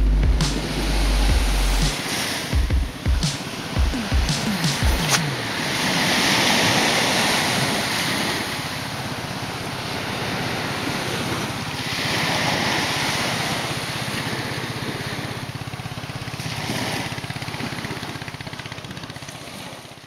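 Surf washing on a beach, swelling and easing every few seconds, and fading out near the end. In the first few seconds, knocks and rubbing sound close on the microphone as a dog's face is pressed against the camera.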